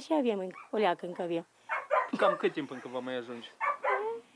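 A woman speaking: an elderly villager's voice, no other clear sound.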